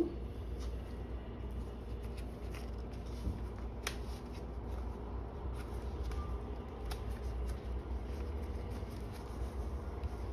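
Fresh leaves rustling as they are folded and wrapped by hand, with a few short sharp clicks, the clearest about four and seven seconds in. A steady low hum runs underneath.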